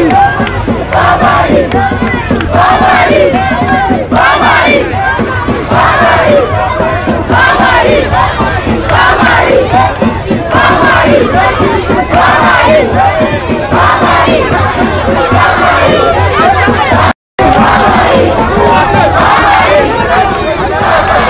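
A dense crowd of men, many voices calling out loudly at once and overlapping, with a brief cut to silence a few seconds before the end.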